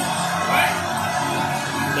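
Music playing from a television's football broadcast, steady through the moment.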